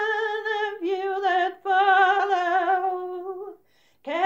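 An older woman singing a traditional ballad unaccompanied, drawing out three long held notes at the end of a phrase, her voice wavering slightly on each. The phrase ends shortly before the end.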